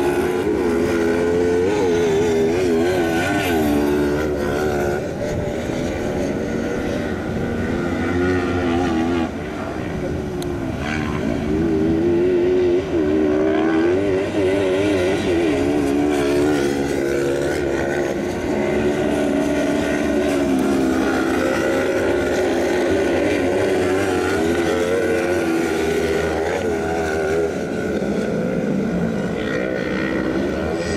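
Several 500 cc kart cross buggies racing on a dirt track, their engines revving up and down continuously as they accelerate and back off through the corners.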